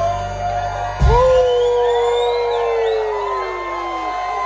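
Live rock band ending a song with one heavy full-band hit about a second in, then a single held note that slowly slides down in pitch. A crowd whoops and cheers over it.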